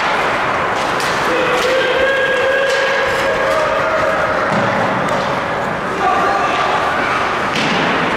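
Ice hockey play in an indoor rink: steady noise of skating with scattered sharp knocks of sticks, puck and boards, and voices calling out from players and spectators.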